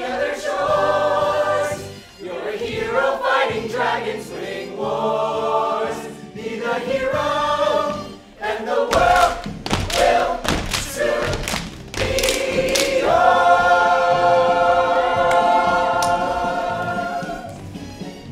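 Show choir singing a pop-style number in harmony, in short chopped phrases at first. About halfway through comes a run of loud sharp hits, and then the whole choir holds one long final chord for about four seconds before it cuts off near the end.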